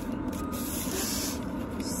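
A paper wrapper being torn and rustled off a thin stick: a short hissing rustle about a second in and another just before the end, over a steady low hum inside a car.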